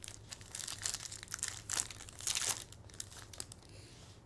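A trading-card pack wrapper being torn open and crinkled by hand, in a string of crackling rustles, loudest a little before and a little after the two-second mark.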